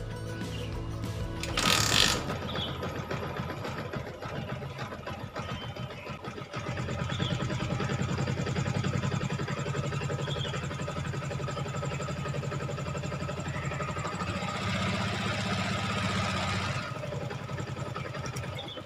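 Yamaha Jupiter MX 135 single-cylinder four-stroke motorcycle engine started and running steadily at idle, then switched off near the end. It is run to check the freshly refilled liquid-cooling system for leaks.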